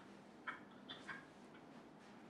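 Near silence: faint room tone with a few short faint clicks about half a second and about a second in.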